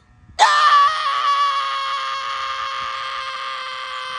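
A person's single long scream, starting about half a second in and held at one steady pitch, slowly fading.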